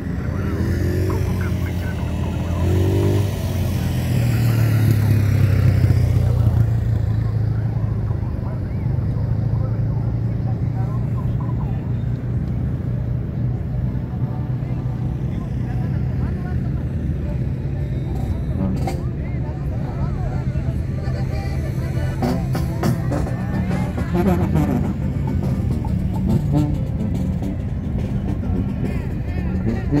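Steady low rumble of vehicle engines on the beach, with one vehicle passing close and loudest about five seconds in. Music and voices can be heard underneath.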